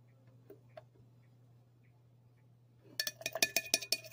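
A metal spoon clinking against a ceramic mug: after about three seconds of near-quiet, a quick run of about ten sharp clinks with a short ring in the last second.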